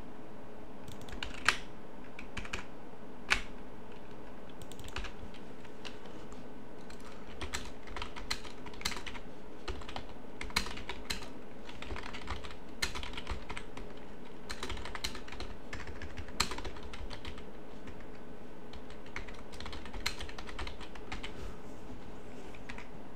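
Typing on a computer keyboard: irregular runs of keystrokes, with a couple of louder clicks in the first few seconds.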